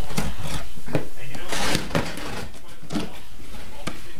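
Cardboard shipping box being cut and pulled open: a series of short knocks and scrapes of cardboard, with a louder scraping burst a little under two seconds in.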